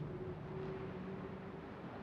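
A faint, steady low drone of two held tones with a soft hiss beneath, fading slightly toward the end.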